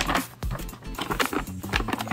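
Tissue paper rustling and crinkling as it is pulled back inside a cardboard box, over background music.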